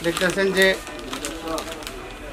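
A man's voice speaking briefly, fading to quieter voice sounds in the second half.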